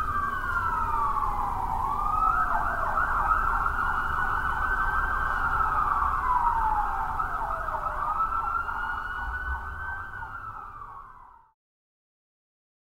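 Emergency vehicle siren wailing, its pitch sweeping slowly up and down with a faster warble over it and a low rumble underneath; it cuts off suddenly near the end.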